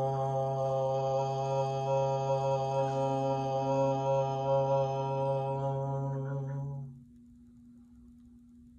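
A man chanting a single long "Om" on one steady low pitch, held for about seven seconds before it stops.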